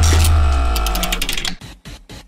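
Music-and-effects transition sting: a deep boom under a held chord with a run of rapid clicks, fading away about a second and a half in.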